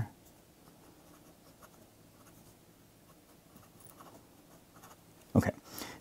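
Pencil writing on paper: faint, scratchy strokes as an equation is written out, with a spoken "Okay" near the end.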